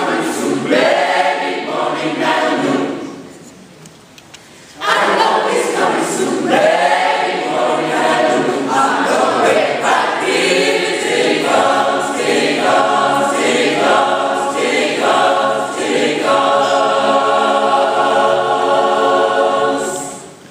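Gospel choir singing in several parts. The singing falls away about three seconds in, starts again about five seconds in, and ends on a long held chord.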